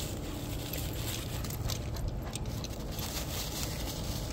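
Footsteps crunching through dry fallen oak leaves in a quick, irregular patter of faint crackles, over a steady low rumble.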